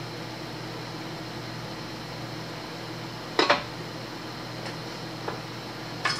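Carbureted engine of a freshly cammed truck running at a steady speed during camshaft break-in, heard as an even hum. A sharp metallic clink comes about halfway through.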